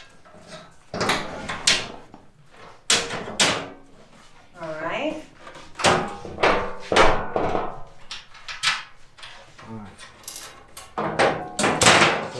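Irregular knocks and clacks, a dozen or so sharp hits, as a UTV door and its plastic panel are handled and pressed into place.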